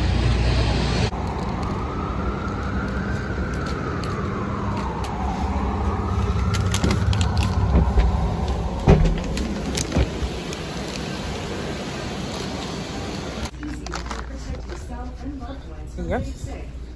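City street traffic rumble with a siren wailing slowly up and down. A few sharp clicks and knocks follow, then the sound drops to a quieter indoor hum near the end.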